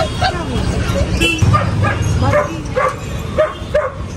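Puppies yipping repeatedly: short, high, arched yelps about three a second.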